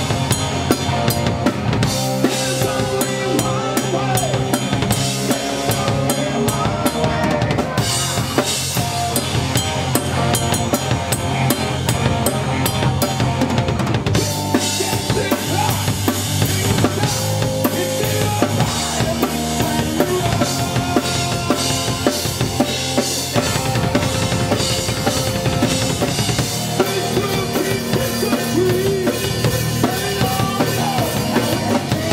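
Live rock band playing full force: a Sonor drum kit, bass drum and snare driving a steady beat with cymbals, under electric guitar.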